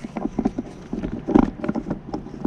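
Threaded plastic head of a Doca window-cleaning extension pole being unscrewed by hand: a run of small irregular clicks and knocks, busiest about one and a half seconds in.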